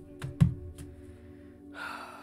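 A few soft taps and one dull thump from a thick deck of oracle cards being handled on a table, over steady quiet background music, with a short rush of breathy noise near the end.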